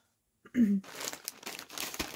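Clear plastic packaging bag crinkling as it is picked up and handled, about a second of scratchy rustling. It follows a short vocal sound about half a second in.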